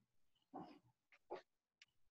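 Near silence, broken by a few faint, brief sounds about half a second in and again at about a second and a half.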